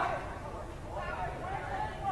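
Faint outdoor football-ground ambience: distant, indistinct voices calling out over a low rumble.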